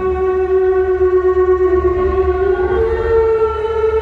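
SOMA Pipe electronic wind instrument played through its mouthpiece on its Orpheus algorithm, raw with no effect. It sounds one held, near-pure note that dips slightly mid-way, then slides up to a higher note near the end, over a steady low hum.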